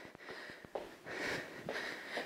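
A woman breathing hard from exertion during a cardio workout: two soft breaths.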